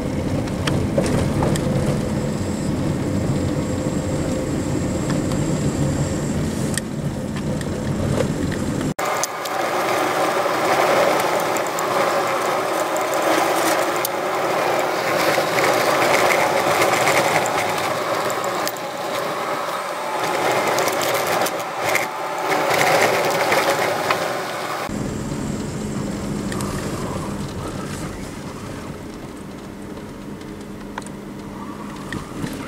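Car driving on a rough dirt road, heard from inside the cabin: a steady low engine and road hum. About nine seconds in it cuts abruptly to a thinner, busier, grainy noise without the low hum, and the hum returns near the end.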